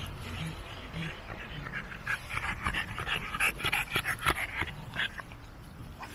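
A dog panting hard close by, a quick run of breaths from about two seconds in to about five seconds in.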